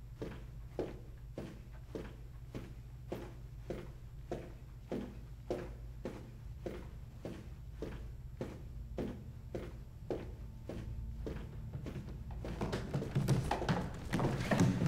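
Footsteps on a hard, glossy school-hallway floor at a steady walking pace of about two steps a second, over a low steady hum. Near the end, louder and more jumbled knocks come in.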